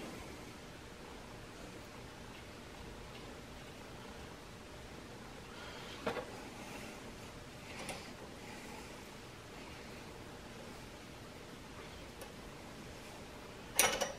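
A low steady hiss of room tone with a few faint metallic clicks, about six and eight seconds in and a sharper one near the end, as a steel bolt is turned by hand and then with a wrench into a threaded railroad spike held in a vise.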